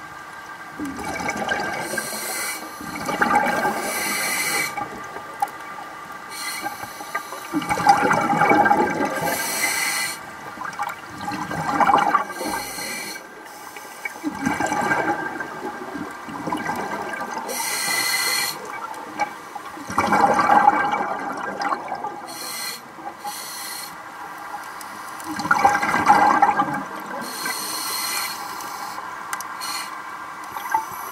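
Underwater sound of a scuba diver breathing through a regulator: a rush of exhaled bubbles every few seconds, with hissing between them. A faint steady hum runs underneath.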